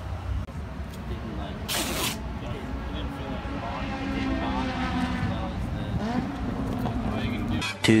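Race-paddock background of voices and a car engine whose pitch climbs and falls in the middle, with one short, sharp rasping rip about two seconds in.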